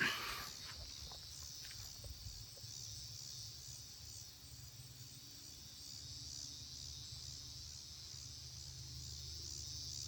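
Faint, steady high chorus of crickets, with a low steady rumble underneath.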